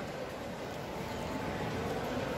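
Steady background hubbub of a shopping-mall food court, with faint distant voices.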